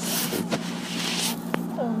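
Hands handling the camera right at its microphone: rubbing and scraping noise for about a second, a small click, then a sharp click about a second and a half in.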